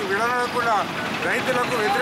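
A man speaking continuously, addressing the camera.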